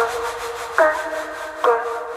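Intro of a techno remix: a synth chord repeats three times, about every second, each hit opening with a quick downward pitch swoop and then holding. There are no drums or bass under it.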